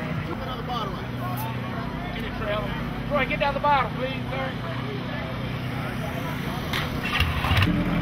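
A vehicle engine idling steadily, its low hum running under scattered voices of people talking nearby.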